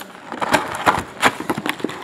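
Cardboard hobby box of trading cards being torn open along its lid: a run of sharp cracks and clicks as the flap breaks loose.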